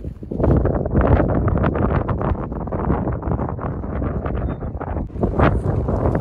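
Wind buffeting the microphone: loud, gusty noise, heaviest in the low end, that picks up about half a second in and keeps on.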